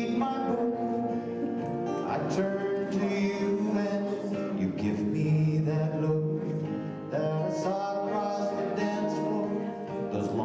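Live acoustic band playing a country waltz on several acoustic guitars, with a voice singing over the strummed chords.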